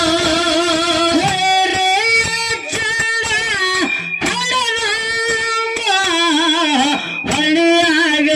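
Live dollina pada folk music: a melody carried in long held notes that step up and down, some with a slow waver.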